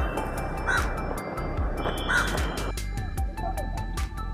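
Crows cawing, two calls about a second and a half apart, over background music.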